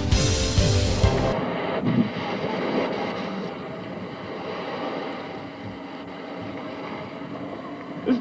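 A rock song's last moment breaks off in a loud burst about a second in. Then comes a steady rushing of wind on the microphone with surf on a beach, fading a little over the following seconds.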